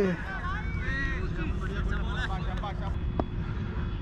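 Players' shouts and calls on an outdoor cricket field, picked up by a helmet-mounted camera microphone over low wind rumble and a steady hum. A loud falling shout trails off at the start, and a single sharp knock comes about three seconds in.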